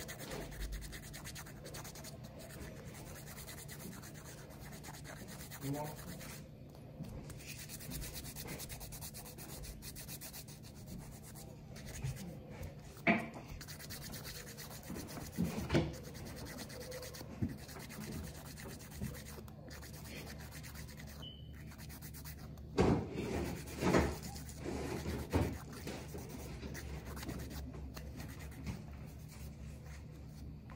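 Emery board rubbing back and forth across fingernails as they are filed down, a steady quiet scraping, with a few brief louder handling sounds around the middle and about two-thirds of the way through.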